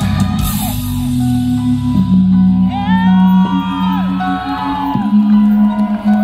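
Live rock band holding a long sustained chord on bass and electric guitar, with a cymbal crash fading out in the first half-second. From about three seconds in, high gliding whoops from the crowd rise over it.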